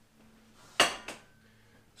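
An empty metal cooking pot set down on the stovetop with a single ringing clank about a second in, followed by a lighter knock.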